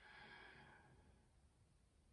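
A faint, breathy exhale, like a soft sigh, lasting under a second at the very start.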